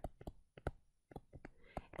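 Faint, irregular clicks, about seven in two seconds, from a stylus tapping on a tablet screen while handwriting.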